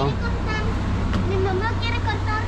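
Busy street ambience: a steady low rumble of traffic with snatches of passers-by's voices.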